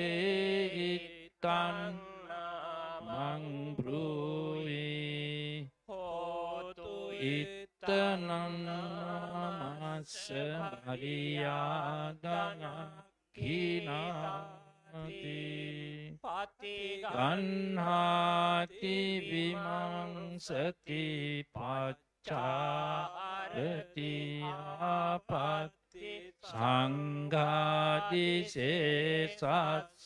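Buddhist monks chanting Pali scripture through microphones in a steady, low recitation tone, with short breaks for breath every few seconds.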